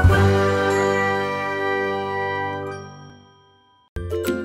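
Logo intro sting: a chord of bright, bell-like chime tones over a deep low note, struck once at the start and left to ring out, fading away over about three and a half seconds.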